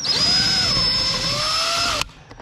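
DeWalt cordless drill-driver running steadily while driving a screw into the wall, its motor pitch wavering under load, then cutting off abruptly at the end.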